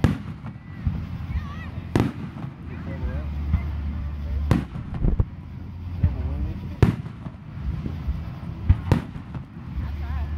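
Aerial fireworks shells bursting in a large display: a run of sharp bangs about every two seconds, with smaller pops between them.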